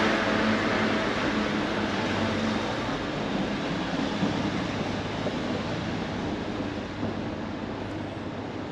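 Outdoor street traffic: a vehicle's engine hum and tyre noise under a steady rush, fading slowly as it moves away.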